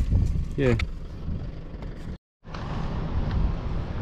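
Wind buffeting a handheld camera's microphone, an uneven low rumble, with a short total dropout about halfway through.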